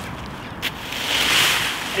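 A rake is dragged through dry, dead Himalayan balsam stalks and brash. There is a click about half a second in, then a rustle that swells and eases over about a second.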